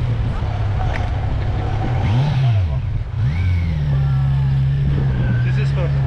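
Motorcycle engine running close by. About two seconds in it is revved up and back down, then revved again a second later and held at a steady higher speed.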